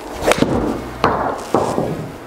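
A pitching wedge striking a Titleist Pro V1x Left Dash golf ball, hit into a simulator screen: one sharp strike shortly after the start, followed by two more knocks, about a second in and again half a second later.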